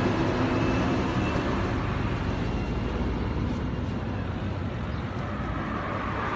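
Steady outdoor traffic noise from passing road vehicles, an even rumble and hiss with no distinct events.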